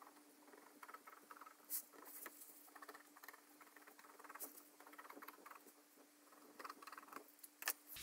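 Faint scratching of a pen tip drawing a marking line along a corset's fabric edge in short strokes, with light fabric rustling and a few soft ticks, over a faint steady hum.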